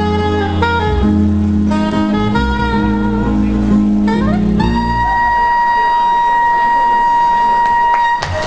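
Live instrumental jazz: a saxophone plays a stepping melody over upright double bass. About halfway through it slides up into one long held note while the bass drops away, the closing note of the piece.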